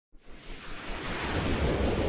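Rushing, wind-like whoosh sound effect of an animated title sequence, swelling up from silence.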